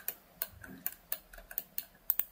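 Computer mouse clicking: about seven short, sharp clicks at uneven spacing.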